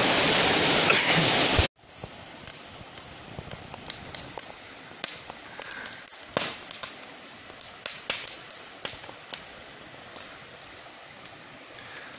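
Rushing white water of a rocky mountain stream cascade, cut off abruptly about two seconds in. After that, a small twig campfire crackling with irregular sharp pops over a much quieter background.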